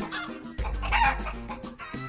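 Chicken clucks from a sound effect, over background music with a steady bass line.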